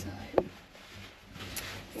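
A single sharp knock about a third of a second in from the wooden snack drawer under a minibar counter as a hand works it, followed by faint rustling.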